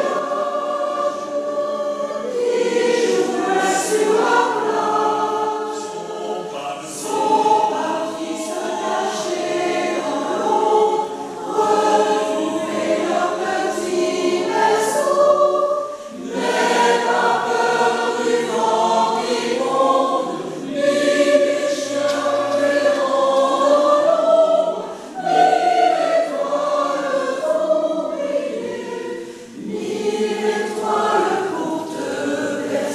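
Mixed choir of women's and men's voices singing a Russian lullaby in parts, in phrases separated by brief pauses for breath.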